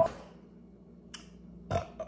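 A man coughs once, briefly, into his fist near the end, against quiet room tone.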